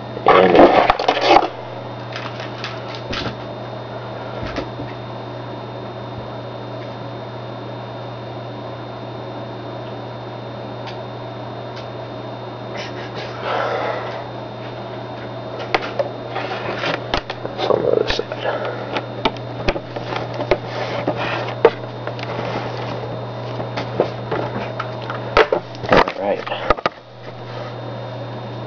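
A steady low hum throughout, with scattered clicks and handling knocks as laptop power cords and a mouse are plugged in, and a few short bursts of muffled speech.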